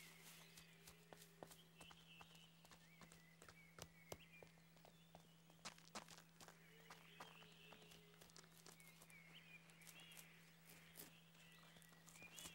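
Near silence: a faint steady low hum under scattered soft clicks and faint high chirps.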